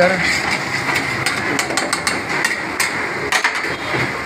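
A metal spatula clinking and scraping against a karahi pan while chicken karahi is stirred: a quick, uneven run of sharp metallic clinks over a steady hiss, dying away just before the end.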